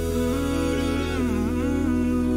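A cappella vocal group humming sustained harmony chords over a steady low bass line, with the upper voice dipping in pitch and coming back in the middle.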